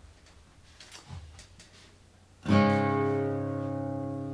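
Steel-string acoustic guitar tuned down a half step. After a couple of seconds of faint handling clicks, a D-shape chord is strummed once about two and a half seconds in and left to ring, slowly fading.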